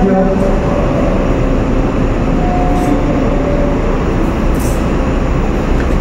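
Steady, loud rumbling noise that holds at an even level throughout, with a few faint steady tones in it.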